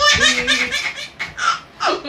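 A baby laughing out loud in a quick run of short bursts.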